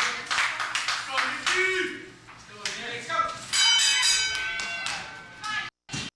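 Audience clapping and a shout, then about three and a half seconds in the wrestling ring bell rings out, its metallic tone holding for about two seconds as the match begins. The sound cuts out completely for a moment near the end.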